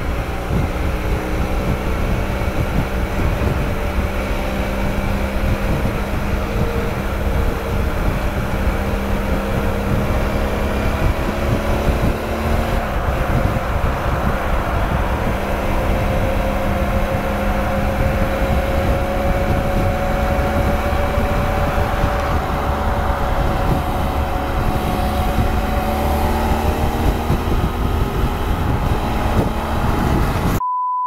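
BMW F800 GSA's parallel-twin engine running at a steady highway cruise, with wind rumble on the microphone. The engine note climbs gradually through the second half, then eases off near the end.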